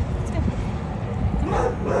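A boxer dog giving a short rising whine near the end, over low wind rumble on the microphone.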